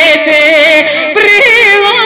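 A woman singing a Macedonian folk song into a microphone, holding a long note with a strong vibrato, then breaking about a second in into a new, ornamented phrase.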